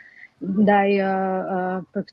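A woman's voice holding one long, steady hesitation sound, an "uhh"-like drawn-out vowel, for just over a second after a brief pause.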